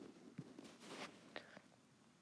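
Near silence: room tone, with a couple of faint clicks.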